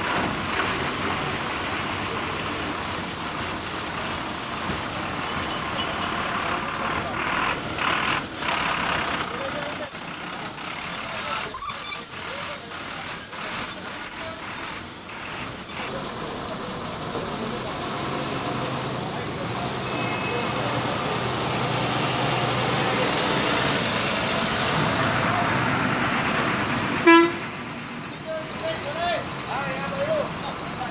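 City buses running and pulling out across a depot yard, with horn toots and a high-pitched beeping that comes and goes through the first half. After that, steady engine and traffic noise, with one sharp knock near the end.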